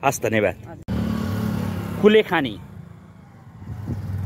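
A woman's last spoken words, then a steady low hum of a running engine, with a short word spoken over it about two seconds in.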